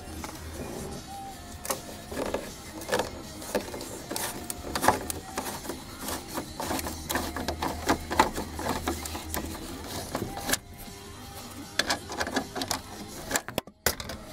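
Screwdriver working a screw out of a Corvair's dash panel: irregular metal clicks and scrapes of the tool on the screw and panel. Music plays in the background.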